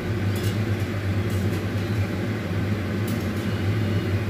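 Steady hum and whir of a countertop convection oven with air fryer running its fan, with a few light metal clicks against the wire rack as food is lifted out.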